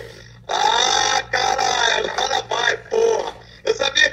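Excited male voices exclaiming and laughing, one of them through a video call, in bursts of speech from about half a second in.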